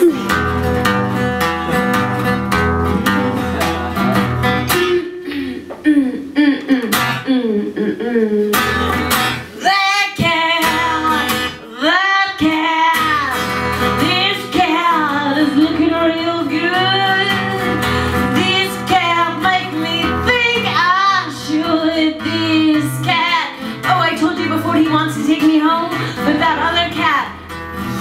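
Strummed Takamine acoustic-electric guitar with a woman singing a wordless vocal line where the guitar solo would go. Her voice comes in a few seconds in and glides up and down over the chords.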